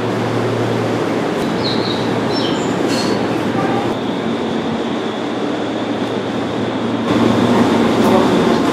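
Electric commuter train pulling out of the station and running past: a steady rumble of wheels and running gear over a low hum, with a few brief high whines in the first half. The sound grows louder about seven seconds in.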